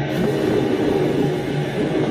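Harsh, heavily distorted electric guitar noise: a dense, beatless wall of fuzz from a noisecore recording.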